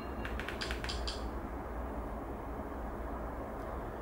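A quick run of about half a dozen light, sharp clicks in the first second or so, like remote-control buttons being pressed to step through a menu, over a steady low room hum.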